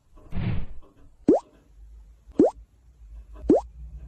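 Three short rising plops, about a second apart, each a quick upward sweep in pitch with a click at its onset. They follow a brief soft rustle near the start.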